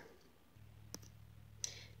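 Very quiet room tone across an edit, with a low steady hum that comes in about half a second in. A single sharp click near the middle and a short soft hiss near the end.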